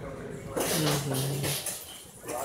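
A person's voice: one drawn-out, low vocal sound about a second long, starting about half a second in, over a rush of noise.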